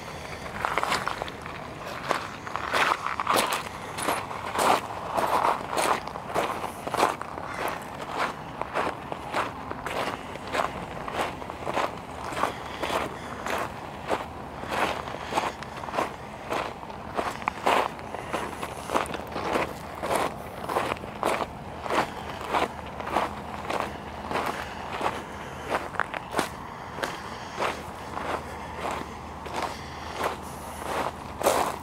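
Footsteps crunching on a gravel and pebble beach at a steady walking pace, about two steps a second.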